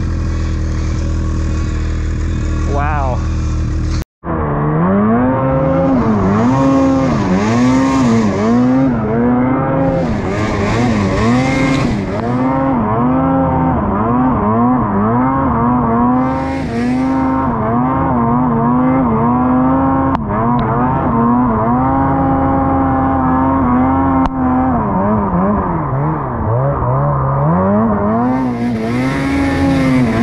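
Ski-Doo Freeride 850 Turbo snowmobile's two-stroke engine working under load in deep snow, its pitch rising and falling every second or so as the throttle is worked, with a steadier stretch near the middle. Now and then a burst of hiss rides over it.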